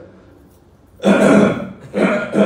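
A man clearing his throat loudly once, about a second in, a short voiced 'ahem'.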